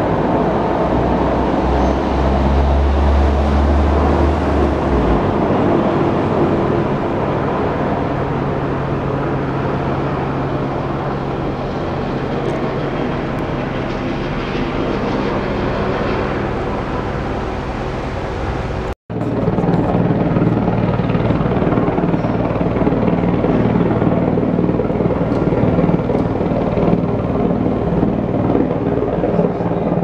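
Helicopter rotor and engine noise, loud and steady, with a deeper rumble in the first few seconds and a momentary break about two-thirds of the way through.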